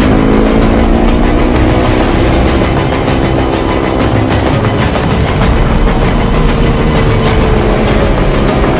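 Motor scooter engine running while riding along, a steady note that sinks slightly in pitch. It is heard under heavy wind and road noise on the microphone.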